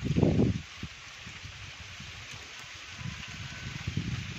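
Wind buffeting the microphone outdoors, loudest as a low rumble in the first half second, over a steady rain-like hiss of open-air background noise.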